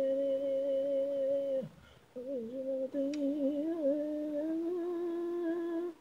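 Isolated female lead vocal of an anime pop song, sung without accompaniment. She holds long, steady notes and breaks off with a falling slide about two seconds in. She then comes back and climbs to a higher held note that stops just before the end.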